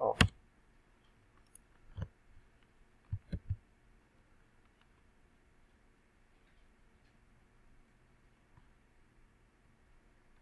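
A few sharp clicks from a computer keyboard and mouse: a loud one right at the start, one about two seconds in and a quick run of three a second later. After that there is faint room tone.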